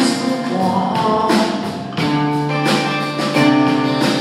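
Live rock band playing a song: electric guitar strumming and drums, with a male lead vocal.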